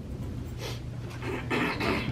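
A person breathing close to the microphone: two short, soft breaths, one about half a second in and one near the end, over a steady low hum.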